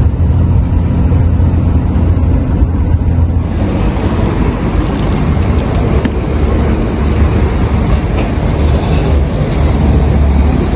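Steady low drone of a Volkswagen truck's diesel engine and road noise heard inside the cab while driving. After about three and a half seconds it gives way to a broader, steady rushing outdoor noise.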